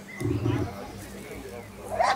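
A Malinois-type dog growling, a loud low burst about a quarter second in, then a quieter rumble, as it jumps at and seizes the helper's protection sleeve.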